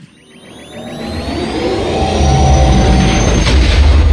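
Sci-fi spaceship engine sound effect spooling up: several whistling whines rise in pitch over a low rumble that swells from near silence to full loudness in the last two seconds.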